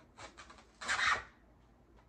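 Rustling and scraping as a lollipop on a stick is pushed into the centre of an artificial floral arrangement, through the faux greenery: a short scratchy rustle, then a louder one about a second in.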